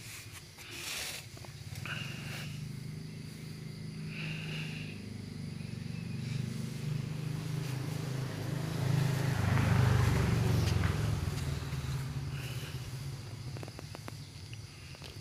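Low engine hum of a vehicle going by, growing louder to a peak about ten seconds in and then fading, with crickets chirping in short spells.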